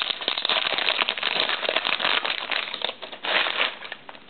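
Foil trading-card pack wrapper crinkling and crackling as it is torn open and the cards handled, a dense run of crackles that thins out about three seconds in.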